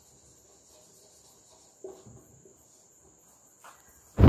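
Very quiet background with a faint, steady high-pitched tone running throughout. A few faint marker strokes on a whiteboard come about two seconds in.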